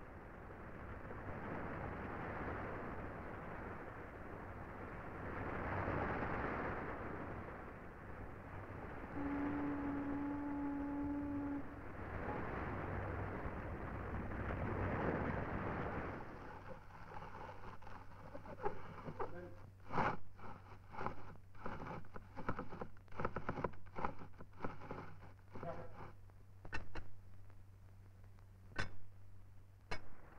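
Sea wash and wind for the first half, with one steady ship's whistle blast of about two and a half seconds midway through. Then sharp, irregular metallic clanks and knocks in a stopped ship's engine room, hand tools on metal as engineers work on the broken condenser pump.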